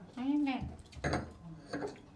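Glasses, plates and cutlery clattering at a dining table, with a few sharp knocks about a second in, after a brief voice at the start.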